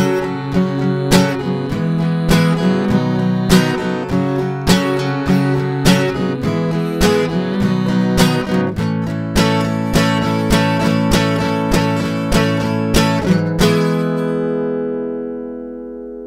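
Acoustic guitar strumming chords in a steady rhythm, then a last strummed chord about two seconds before the end that rings on and fades away.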